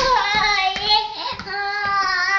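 A toddler's voice singing a long, slightly wavering note, with a brief break near the middle. Under it, oversized sneakers clomp on a tile floor about twice a second.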